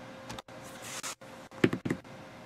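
Quiet room noise with a faint steady hum, then a quick cluster of a few knocks about one and a half seconds in.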